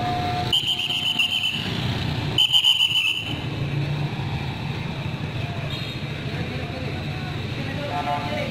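Two long, shrill blasts of a traffic-control whistle, each about a second long and about a second apart, over a steady low hum.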